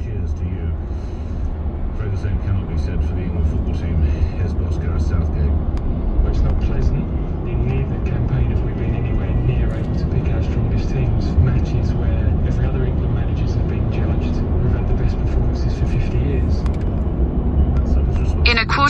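Steady deep road and engine rumble inside a car cruising at motorway speed, with faint talk from the car radio underneath.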